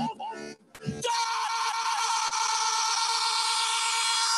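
A man's voice speaks briefly, then a man's shout into a microphone is held at one unchanging pitch for about three and a half seconds, a film-clip sample drawn out in a DJ's live remix.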